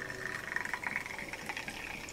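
A drink poured from a can into a glass: a stream of liquid running into the glass with a fine fizzing crackle.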